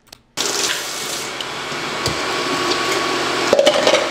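Kitchen faucet running steadily, with water splashing over a frozen food package held under the stream in the sink.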